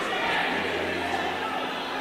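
Quiet gymnasium ambience: a low steady hum with faint background voices in a large hall.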